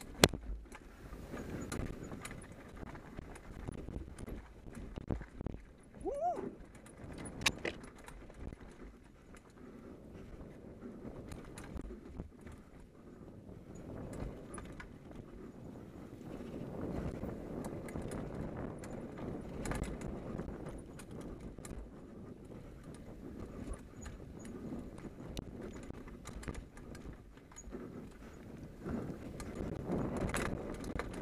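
Hardtail mountain bike descending a leaf-covered dirt trail at speed: tyres rumbling over the ground, with chain and frame rattling and clicking over roots and bumps, and sharp knocks from hard hits, the loudest just as it begins. A brief squeal comes about six seconds in.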